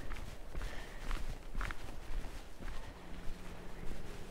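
Footsteps of a person walking on a village path, coming as irregular soft steps. A faint low hum starts near the end.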